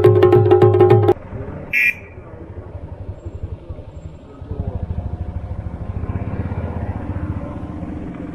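Chaliya folk band music, regular drum strokes over a steady held note, cut off abruptly about a second in. After that, a vehicle engine runs with a low, quick pulsing that grows louder about halfway through, with one brief sharp sound near two seconds.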